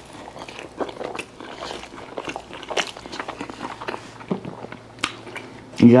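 A man biting into and chewing a club gyros sandwich of grilled pita, with many small irregular crunches and wet mouth sounds.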